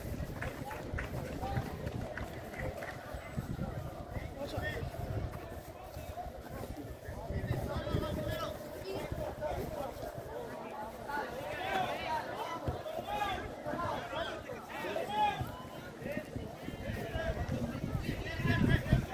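Indistinct chatter and calls from a group of boys, growing busier from about halfway through.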